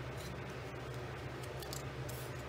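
Brief crisp rustles of small cardstock pieces being handled and pressed down, one just after the start and another near the end, over a steady low hum.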